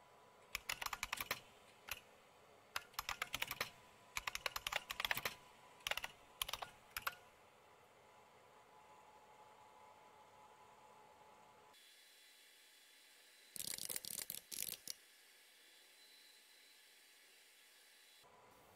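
Faint typing on a computer keyboard as shell commands are entered. There is a run of keystrokes over the first seven seconds or so, a quiet gap, then a short burst of keys about three-quarters of the way through.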